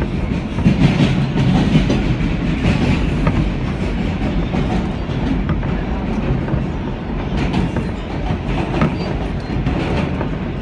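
An R160B subway car running along the track, heard from inside: a steady rumble of wheels on rail, a little louder in the first couple of seconds, with occasional faint clicks.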